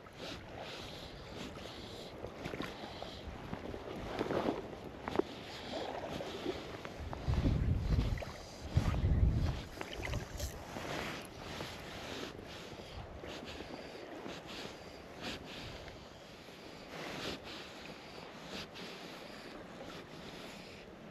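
Wind blowing over choppy loch water, with small waves lapping and splashing close by; the wind buffets the microphone in two strong low rumbles about seven and nine seconds in.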